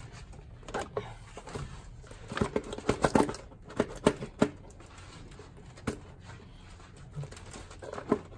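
Scattered light clicks and knocks as the rocker cover of an Audi 2.0 TDI BPW engine is wiggled and lifted against the cylinder head, most of them bunched in the middle.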